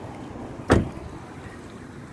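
A car door on a 2007 Chevy Aveo shut once with a single sharp slam, under a second in.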